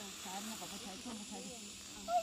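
Faint voices of people talking, over a steady high-pitched hiss.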